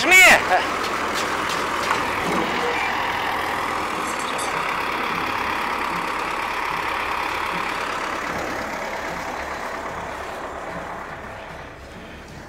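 Tractor engine running steadily, fading away over the last few seconds.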